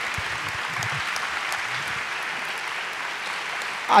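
Audience applauding steadily, with a man's voice starting at the very end.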